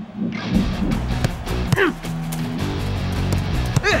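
Background music with a steady beat, with two falling pitch sweeps about two seconds apart.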